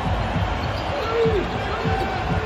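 Basketball being dribbled on a hardwood court: a run of short low thumps, with a faint voice briefly in the middle.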